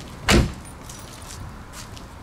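Driver's door of a 1990 Chevrolet Corvette C4 convertible shut once, a single heavy thump about a third of a second in.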